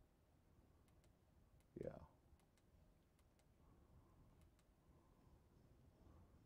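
Faint, irregular computer mouse clicks, about ten over a few seconds, against near-silent room tone.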